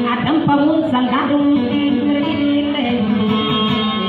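Maranao dayunday music: a plucked string instrument playing steadily, with a voice singing in gliding, ornamented lines over it.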